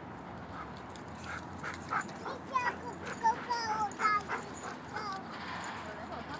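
Dog whining and yipping: a string of short high whines, many falling in pitch, repeating from about a second in until near the end.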